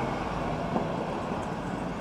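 Steady low background rumble and hiss with no distinct events.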